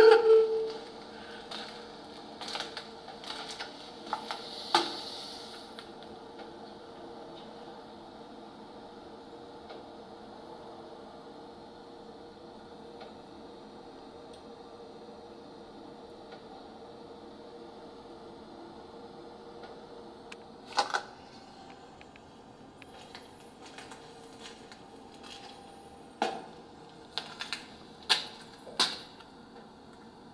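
Handheld digital audio recorder playing back through a small speaker: a faint steady hiss with a low hum. Scattered clicks and taps, with two sharper ones about two-thirds of the way through and a cluster of them near the end.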